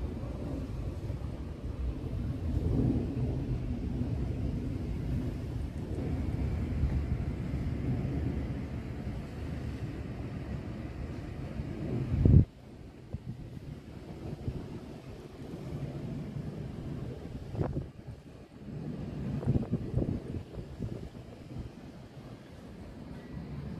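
Wind buffeting the microphone, a low, uneven rumble. A loud thump comes about twelve seconds in, after which the rumble is quieter, with a couple of smaller knocks near the end.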